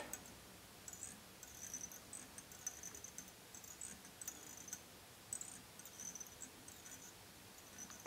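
Faint, high-pitched scratchy rasps of black tying thread being wound from a bobbin around a fly hook's shank over a peacock quill, in short stretches with gaps between them.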